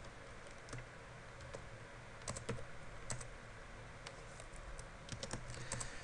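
Faint computer keyboard typing in irregular runs of keystrokes, a quick flurry about two seconds in and a denser run near the end.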